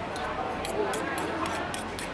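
Metal spoon and fork clinking and scraping on a ceramic plate, a run of light clicks in quick succession over background chatter.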